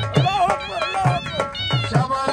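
Dhol drum beating a quick folk dance rhythm, its deep strokes dropping in pitch after each hit, under a high, wavering melody line.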